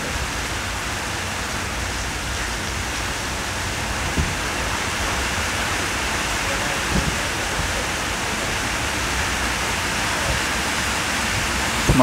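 Heavy rain pouring down in a steady, unbroken hiss onto a wet road.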